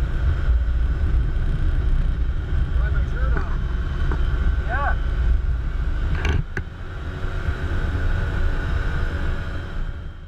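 Can-Am Commander 1000 side-by-side's V-twin engine running under way, a steady low rumble heard from inside the cab behind the full windshield, with a faint steady whine over it. A sharp click comes about six and a half seconds in, after which it runs a little quieter.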